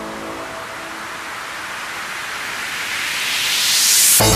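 Electronic dance background music in a breakdown: the beat drops out and a rushing noise riser swells, growing louder and brighter toward the end as it builds to the next section.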